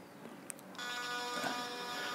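A faint click about half a second in, followed by a faint, steady electric buzz made of several held tones.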